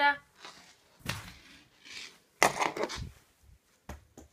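Handling noise of plush toys and a hand-held phone: a short rustle about a second in, then a louder scuffle and thump about two and a half seconds in, and a small click near the end.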